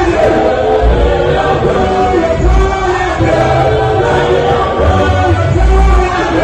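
Church choir of men and women singing a gospel song through microphones, a male lead voice in front, with deep bass notes sounding every second or two underneath.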